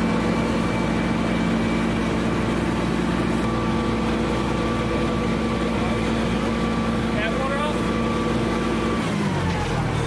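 A heavy engine running steadily at a constant speed, then slowing with a falling pitch about nine seconds in.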